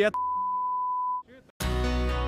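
A steady single-pitch censor bleep lasting about a second, covering a man's spoken word. Background music starts near the end.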